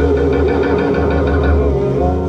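Live rock band music: amplified electric guitar and bass guitar playing together, settling into a held chord near the end.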